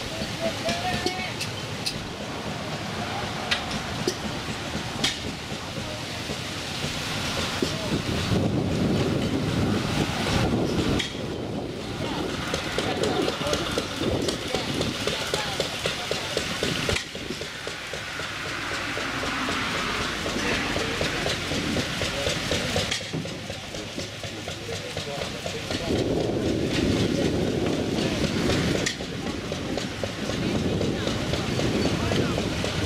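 Gusty wind buffeting the microphone, with people talking in the background.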